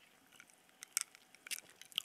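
A few faint, short clicks, scattered irregularly over two seconds, with the clearest near the end.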